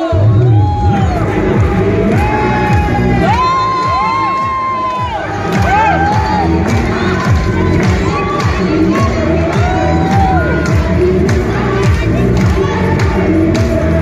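Crowd of voices shouting and cheering in long calls over steady, repeated drumming.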